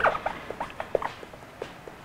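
Marker writing on a whiteboard: a run of short, irregular squeaks as each letter is stroked out.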